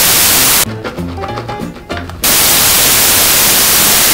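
Loud burst of white-noise static that cuts off about half a second in, giving way to light background music, then comes back a little after two seconds and holds.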